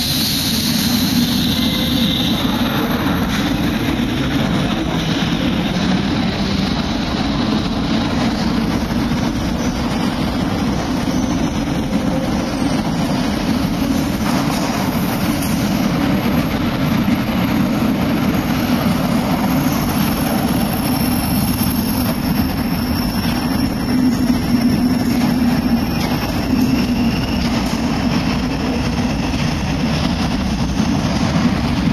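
Saint Petersburg Metro train running along the station platform: a loud, steady low rumble on the rails.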